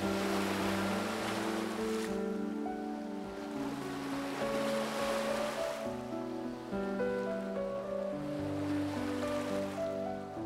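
Background music of slow, held chords over the wash of sea water, which swells twice.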